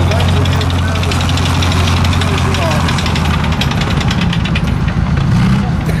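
T-34/85 tank's V-2 V12 diesel engine running as the tank drives, a steady low note with a rapid, even clatter over it; the low note eases a little after about halfway.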